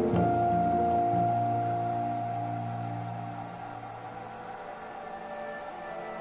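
Soft ambient background music: a chord comes in at the start, and its held notes slowly fade away.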